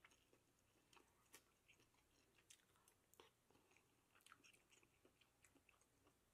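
Very faint chewing of a mouthful of soft shrimp and grits, heard as scattered small mouth clicks.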